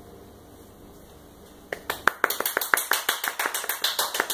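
The last chord of an acoustic guitar and fiddle dies away to a faint hush, then a little under halfway in, hand clapping starts: quick, sharp, evenly paced claps at about five or six a second.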